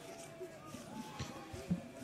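Faint football-pitch ambience: distant players' shouts and calls, with two soft thuds of the ball being played, the louder one about three-quarters of the way through, around the time a shot is struck.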